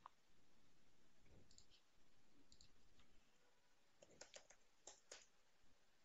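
Faint clicks of a computer mouse and keyboard, a handful of them about four to five seconds in, with near silence otherwise.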